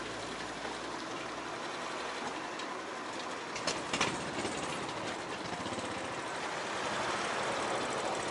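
Motor scooter running at riding speed, a steady engine and road noise, with a couple of sharp clicks about halfway through.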